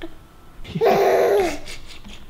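A woman's laughing exclamation: one loud vocal burst, about a second long, that slides down in pitch at its end, after a few faint giggles.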